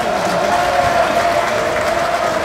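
Loud, steady crowd applause.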